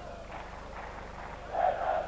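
Stadium crowd noise under a football broadcast: a steady murmur that swells louder about one and a half seconds in.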